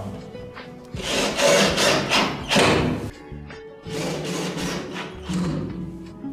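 A cordless drill driving drywall screws into a gypsum-board ceiling in four short rasping bursts, the two longest early on, over background music.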